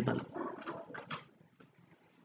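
A few faint clicks and knocks over about the first second, then near silence: a LAN (Ethernet) cable being handled and plugged into the computer.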